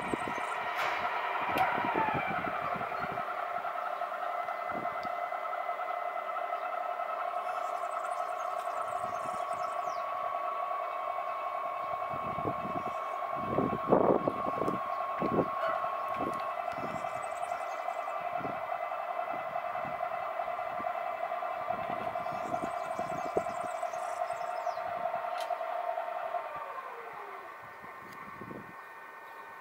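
Paramount ME telescope mount's drive motors whining steadily as it slews, a set of steady tones. One tone drops away about two seconds in, and near the end the rest glide down in pitch and stop as the mount slows to a halt. A few soft knocks come around the middle.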